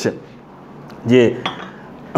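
A ceramic mug set down on the table with a brief clink, about one and a half seconds in.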